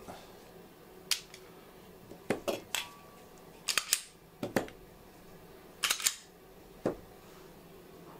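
Handling noise from two polymer striker-fired pistols, a CZ P-10 C and an H&K VP9, as their magazines are dumped out: about a dozen separate sharp clicks and clacks, some in quick pairs.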